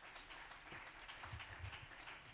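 Small audience applauding faintly after a stand-up set, with a few low thumps about halfway through.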